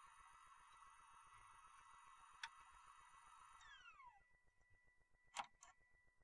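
Near silence: a faint electronic hiss with thin steady high tones that drop away in a downward glide a little past halfway, and two faint clicks.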